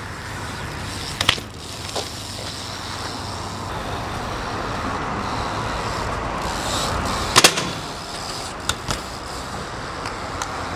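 BMX bike tyres rolling over concrete pavement, with a few sharp knocks of the bike hitting the ground; the loudest, a double knock, comes about seven and a half seconds in. Road traffic runs underneath.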